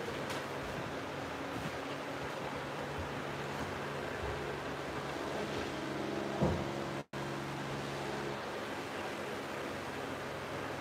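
Steady hiss of an empty room with a low hum under it. A single soft knock comes about six and a half seconds in, and the sound cuts out for an instant just after.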